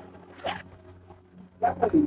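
Clear plastic packaging bag of a boxed suit being pulled open by hand, the plastic rustling and crinkling.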